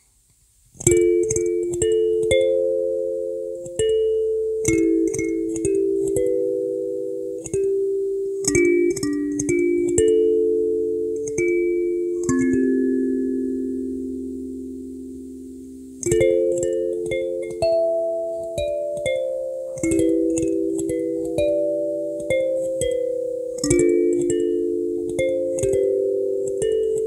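Handmade purpleheart-wood kalimba played solo: a melody of plucked metal tines, each note ringing and fading, starting about a second in. A little past the middle one low note is left to ring out for a few seconds before the melody picks up again.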